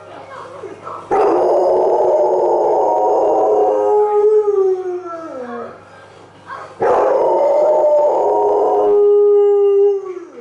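Large black dog, left alone at home, howling: two long howls of several seconds each with about a second between them, the first sliding down in pitch as it fades and the second falling away at the end.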